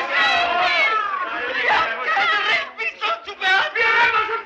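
A crowd of voices shouting and jeering at once, many high, wailing voices overlapping; a little under three seconds in it breaks into separate short shouts.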